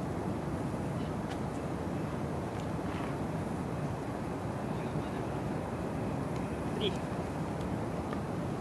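Steady low wind noise buffeting the microphone, with a few faint clicks.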